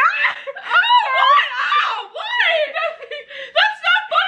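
Women laughing hard, a run of high-pitched giggles and squealing laughs.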